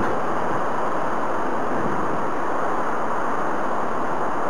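Strong wind: a steady, even rush of noise with no gusts standing out.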